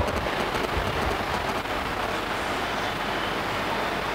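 Steady rushing background noise, without any pitched tone or distinct events.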